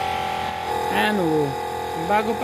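Small portable tyre compressor plugged into the car, running with a steady buzzing drone as it inflates a punctured flat tyre.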